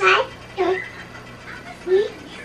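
A toddler's babbling: three short, high-pitched vocal sounds, the first the loudest.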